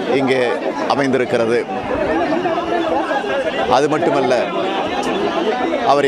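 Speech: a man speaking Tamil, with chatter from the surrounding crowd.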